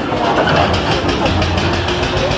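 An engine running steadily at idle.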